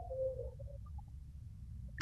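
Low, steady background hum and room noise on a video-call line, with a faint, brief murmur in the first half second.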